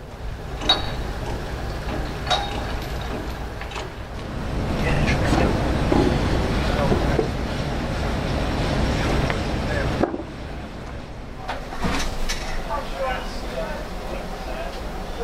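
Indistinct background voices over a steady low rumble, with a few sharp knocks.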